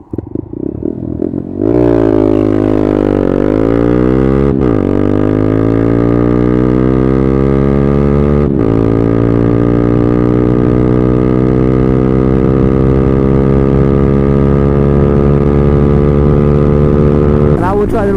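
Honda Grom 125's single-cylinder engine through a Tyga Performance full exhaust, idling, then launched at full throttle. The revs climb, drop sharply at a clutchless upshift about four and a half seconds in, climb and drop again at a second shift about eight and a half seconds in, then rise slowly and steadily in the next gear until the throttle closes near the end.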